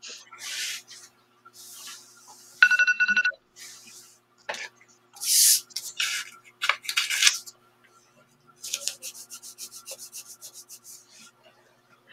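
Paper being handled and rustled, with a short pulsing electronic beep about three seconds in. Near nine seconds comes a quick run of sharp rips, a sheet being torn out of a spiral notebook along its wire binding.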